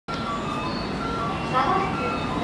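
Railway station public-address system on the platform: an electronic chime melody of short held notes, overlapping a spoken announcement.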